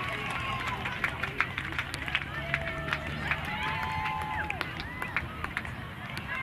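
Outdoor soccer-field ambience: distant players and spectators shouting and calling out, with scattered short sharp clicks and taps over a steady low rumble.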